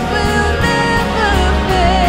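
Live worship band playing a contemporary Christian rock song: drum kit, electric bass and electric guitars under a sustained, gliding melody line.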